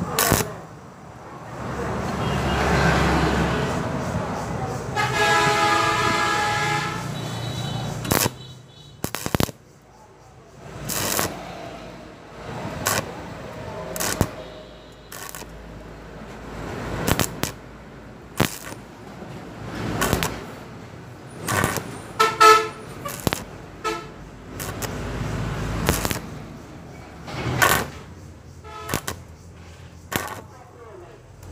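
Stick-welding arc on thin square steel tubing, struck again and again in many short bursts a second or two apart as the joint is tacked in spots. A vehicle horn sounds in the background about five to seven seconds in.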